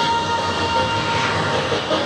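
A radio-controlled model aircraft's engine running in flight, heard over loud music.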